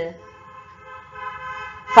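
A steady pitched tone held for nearly two seconds, growing louder about halfway through and breaking off as speech resumes.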